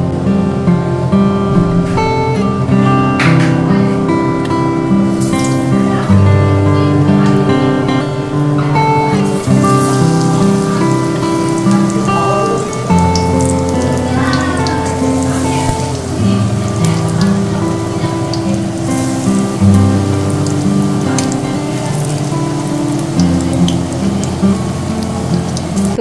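Instrumental background music with held notes over a bass line. Underneath it, hot oil sizzles as gram-flour-battered brinjal slices deep-fry.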